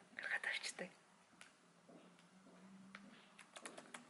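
Computer keyboard keystrokes as a web address is typed: a single click about a second and a half in, then a quick run of four clicks near the end.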